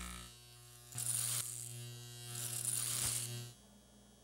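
A steady low buzzing hum with two swells of hiss, the hum stopping shortly before the end.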